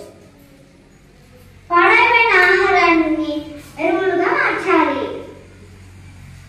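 A girl's voice speaking through a microphone in two phrases, the first starting a little under two seconds in, over a faint steady hum.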